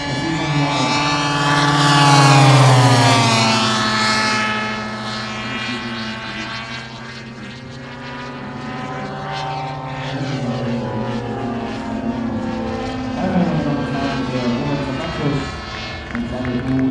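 The twin ZG 45 two-stroke petrol engines of a large-scale RC Dornier Do 335 model passing overhead. The engine note swells to its loudest about two to three seconds in and drops in pitch as the plane goes by. It then runs on steadily and grows a little louder again near the end.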